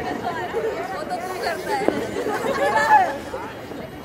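Chatter of several voices talking over one another, with no single clear speaker; one voice comes through a little louder shortly before three seconds in.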